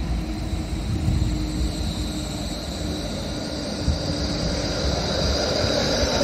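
Melbourne E-class low-floor electric tram passing close by: a steady rumble of wheels on the rails with a high, steady whine from its electric drive that rises a little near the end.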